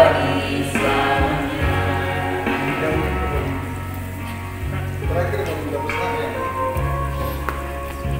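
A small mixed church choir singing a slow hymn-like song over instrumental accompaniment. The voices end about a second in, and the accompaniment plays on steadily with only scattered vocal sounds.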